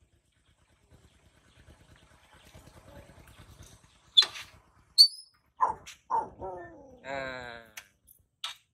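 Baby macaque giving two sharp, high squeaks, then a few falling cries and a wavering, drawn-out cry near the end. A faint low rattle builds during the first few seconds.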